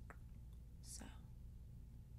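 A light fingertip tap on a smartphone screen, then a soft breathy exhale about a second in, over a low steady hum.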